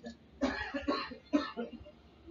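A person coughing: three short coughs in quick succession, about half a second apart.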